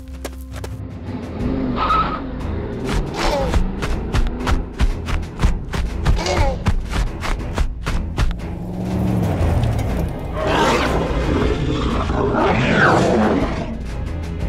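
Cartoon action music mixed with sound effects: a vehicle with tyre squeals and sharp hits. About ten seconds in comes a loud stretch of screeching, rising and falling dinosaur roar effects.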